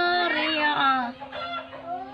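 A boy reciting the Quran in a melodic chanting style, holding a long ornamented note that falls in pitch and fades out about a second in, followed by softer traces of voice.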